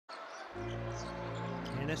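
Basketball dribbled on a hardwood court during live play, over steady low background music that comes in about half a second in.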